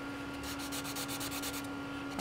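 Compressed charcoal stick rubbing hard on sketchbook paper over a layer of tempera paint, a steady dry scraping as a dark area is filled in.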